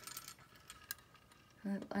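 A few faint clinks and ticks of a glass jar candle with a metal lid being handled among other jars on a wire shelf, the sharpest click about a second in.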